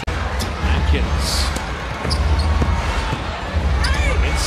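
Basketball being dribbled on a hardwood court during live play, short bounces over a steady low arena rumble.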